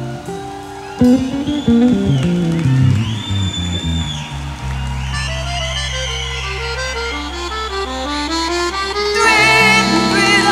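Live band playing an instrumental passage of a forró song, with a run of notes stepping downward, louder from about a second in. A wavering held note comes in about nine seconds in.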